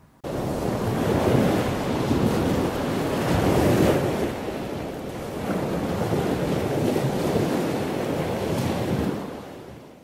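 Sea surf, waves breaking and washing in with wind, swelling and ebbing. It starts suddenly and fades out near the end.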